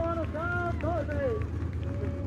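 Raised, high-pitched voices over a steady low rumble.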